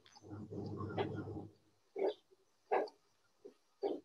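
A faint, distorted human voice over a video-call connection: a low, buzzy sound for about a second and a half, then three short syllables.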